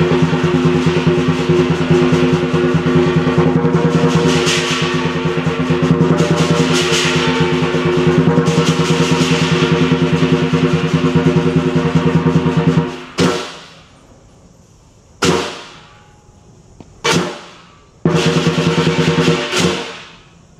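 Lion dance percussion ensemble, a big drum with cymbals and gong, playing a fast continuous roll with ringing metal tones. About two-thirds through, the roll breaks off into three single crashes, each left to ring out, then a brief roll resumes and stops just before the end.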